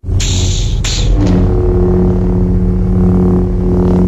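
Production-company logo ident sound effect. It opens abruptly with a deep rumble and two quick whooshes in the first second, then settles into a steady, low held tone over the rumble.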